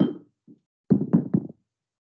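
Dull knocks: a single one at the start and a quick run of three about a second in.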